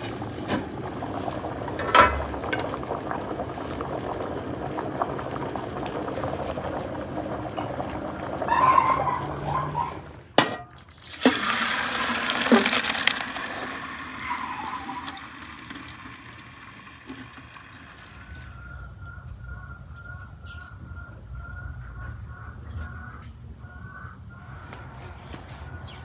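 Hot cooking water and boiled food poured from a pot into a metal colander, a splashing pour lasting a few seconds about halfway through. Before it comes a steady noisy stretch; after it, a quieter stretch with a faint repeated high note.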